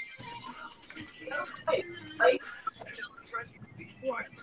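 Indistinct voices mixed with music.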